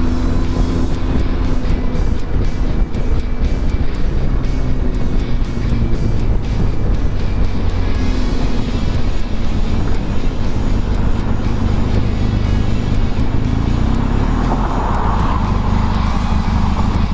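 Benelli TRK 502X parallel-twin engine running steadily at road speed, mixed with loud, constant wind rush on the helmet-mounted microphone.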